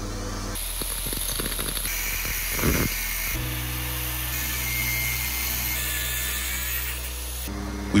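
Metal lathe spinning a car alternator's claw-pole rotor while a cutting tool turns away its iron teeth, giving a steady high-pitched whining hiss. Background music plays underneath.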